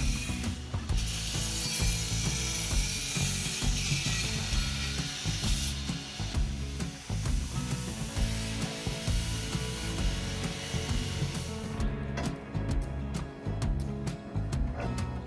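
A belt grinder grinding the end of a steel roll-cage tube gives a loud rasping hiss for the first several seconds, then runs on more quietly. Background music with a steady bass line plays throughout, and a run of sharp clicks comes near the end.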